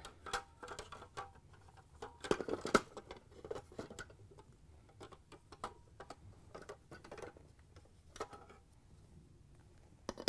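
Light clicks and knocks of clear plastic refrigerator ice-bucket and auger parts being handled and twisted apart, loudest about two and a half seconds in.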